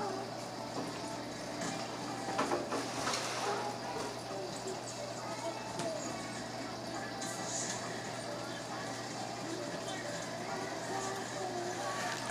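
Faint, indistinct voices in the background over a steady low hum, with a few soft knocks about two to three seconds in.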